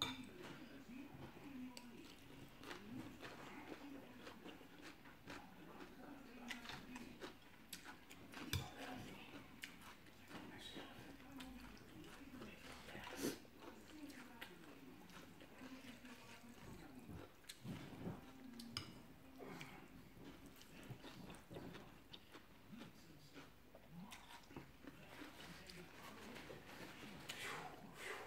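Faint eating sounds: a person chewing mouthfuls of rice noodles in curry with raw vegetables, with sharp clicks of a metal fork and spoon against a glass bowl, the loudest about 8 and 13 seconds in.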